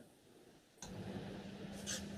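Dead silence from the video call's audio gate, then, a little under a second in, a faint steady hiss with a low hum from an open microphone: room tone.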